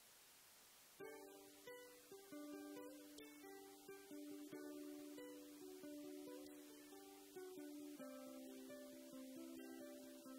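Solo ukulele playing an instrumental melody, picked notes ringing over a held lower note, starting about a second in after a moment of faint hiss.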